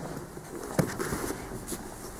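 Grappling movement on a mat: cotton jiu-jitsu gis rustling and bodies shifting on foam tatami, with a few soft knocks about a second in.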